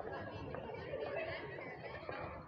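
Indistinct chatter of several people talking nearby, with no clear words, over a steady background of street noise.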